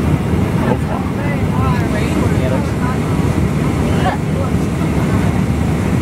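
Steady low rumble of an airliner cabin: the jet engines and rushing air heard from inside, with faint voices talking over it.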